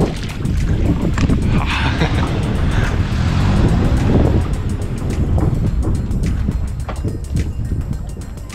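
Water splashing from paddle strokes close to the microphone on a stand-up paddleboard, over a heavy rumble of wind on the microphone, with music underneath.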